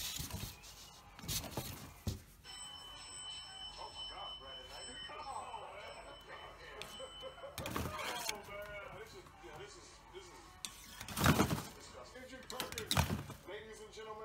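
Muffled background voices and music, with a few sharp knocks, the loudest two near the end.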